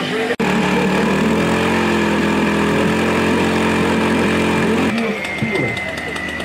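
An engine running steadily, stopping abruptly about five seconds in.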